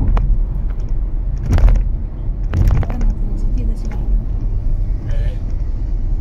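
Steady low road and engine rumble inside a car moving at highway speed, with a few brief sharp knocks about a second and a half and three seconds in.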